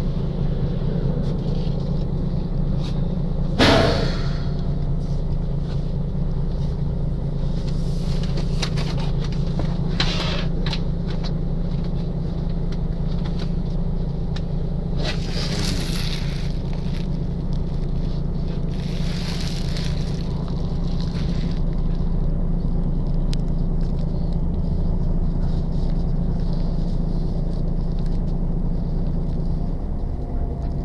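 Steady low engine drone heard from inside the cabin of a large vehicle as it stands or creeps in traffic. There is a sharp knock about four seconds in, and brief rushing hisses come and go later on.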